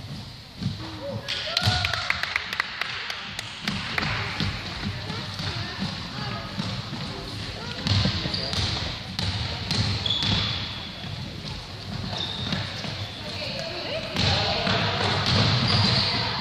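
A basketball bouncing on a hardwood gym floor during play, mixed with shouting voices of players and spectators that ring in the large hall, with sharp sudden knocks scattered through.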